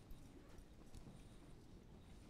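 Near silence: room tone with a few faint scattered ticks.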